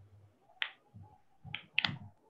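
Three short, sharp clicks: one about half a second in, then two close together near the end.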